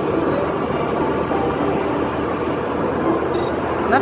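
Steady running and road noise of a vehicle travelling along a paved road, with wind.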